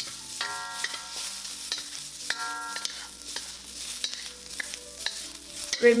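Shrimp sizzling in hot oil in a wok while a wooden spatula stirs and scrapes them around, with a steady hiss and frequent short clicks and scrapes.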